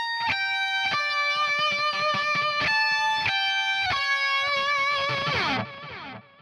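Electric guitar through a Line 6 Helix Fatality amp model with chorus and delay, playing a short melodic line of held notes with quick picked attacks between them. Near the end the pitch slides down and the sound fades out.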